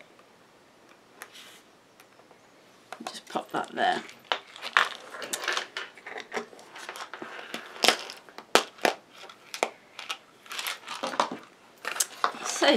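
Handling of paper craft pieces: quiet at first with a single click about a second in, then a run of irregular paper rustles, taps and clicks as cardstock boxes are handled.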